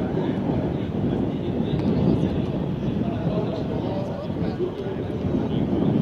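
Steady low rumble of aircraft noise on an airfield, with indistinct voices over it.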